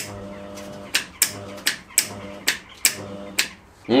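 Kemppi MIG/MAG welder switched on with a click, its transformer humming steadily, with about seven sharp clicks at its front-panel controls as it powers up. The welder, just repaired with a new transformer, comes back to life.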